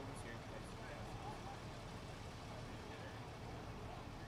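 Outdoor street ambience: a steady low rumble of road traffic, with faint voices in the distance.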